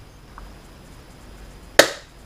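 A single sharp knock about two seconds in from the small plastic transmitter box being handled on the desk, with a faint tick shortly before it.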